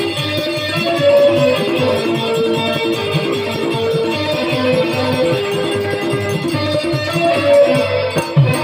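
Folk dance music: a melody of short held notes played over a steady drum beat with rattling percussion.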